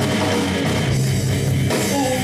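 Live rock band playing an instrumental passage between vocal lines: electric guitars and drum kit, loud and steady.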